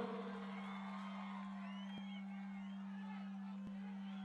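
Faint concert crowd, with distant voices and a few whoops, over a steady low hum.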